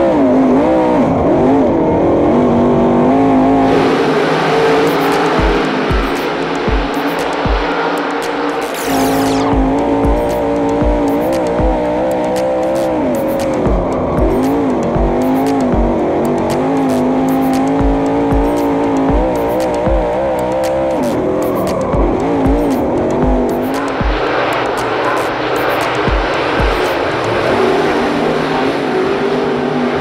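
Dirt Late Model race cars' V8 engines revving up and down as the cars slide through the turns on the dirt track. From about four seconds in, a music track with a steady beat plays over them.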